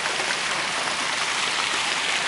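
Water of a large stone fountain splashing and spilling from its basins into the pool below, a steady, even rush of water.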